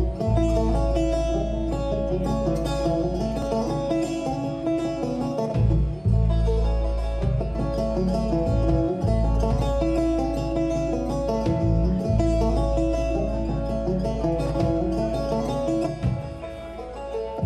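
A banjo picking a lively instrumental line over a plucked upright bass that holds the low notes, with no singing.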